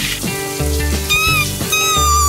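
Cartoon background music with a steady bass line and a gliding melody, over a faint hiss of running shower water.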